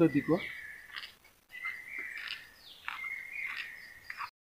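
Birds calling: three bursts of high chirps built around a held high note, with short sweeping calls mixed in.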